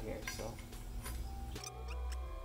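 A few light metal clinks as steel-backed main bearing shells are pressed into the main saddles of a small-block Chevy 350 engine block. About one and a half seconds in, background music begins.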